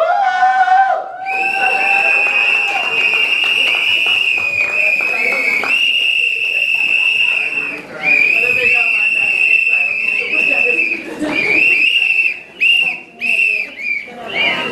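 Shrill, loud whistling tone from the public-address system, most likely microphone feedback. It rises sharply at the start, is held nearly steady for several seconds at a time, and cuts in and out in short spurts near the end.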